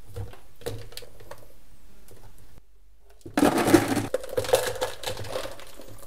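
Chunks of sculpting clay handled into a plastic measuring jug on a scale, with faint knocks, then, after a brief gap about two and a half seconds in, a louder clatter and rustle of many clay pieces tipped into the jug.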